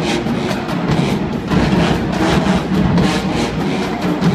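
A full marching band playing, with a brass section holding chords over a drumline's repeated strokes.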